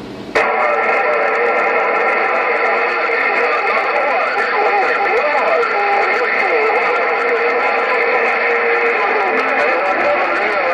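HR2510 radio tuned to 27.085 MHz putting out a received signal that comes in about a third of a second in. It is a steady, narrow-band rush with whistling tones and garbled, unintelligible voices beneath.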